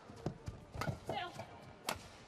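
Badminton rally: three sharp racket strikes on the shuttlecock, spaced irregularly, with a short squeal of court shoes on the sports floor in between.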